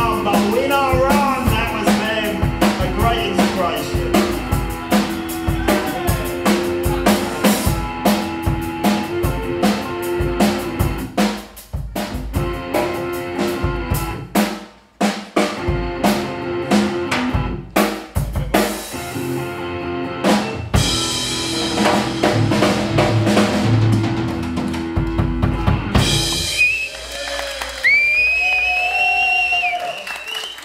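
Live rock band of drum kit, electric guitar and voice playing, the drums hitting hard and fast throughout the first twenty-odd seconds. Near the end the drums drop out, leaving wavering, gliding guitar-effect tones from effects pedals that the guitarist says he can't work.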